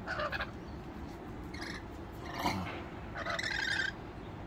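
Rainbow lorikeets giving several short calls, with a longer one near the end.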